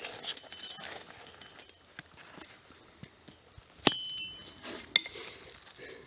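Steel chain frozen in liquid nitrogen clinking as it is set on an anvil, then one sharp hammer blow about four seconds in that rings off the anvil. The blow snaps a link made brittle by the cold.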